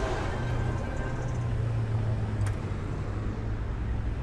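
Dodge Challenger muscle car engine running at low speed as the car drives slowly past, a steady low engine note that eases off in the second half.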